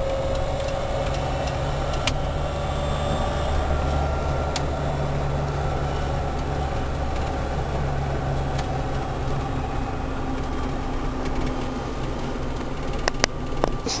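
Electric drive motor of a converted battery-electric pickup running while the truck drives, heard inside the cab along with road noise: a steady low hum, with a faint whine that rises slightly over the first few seconds and then fades.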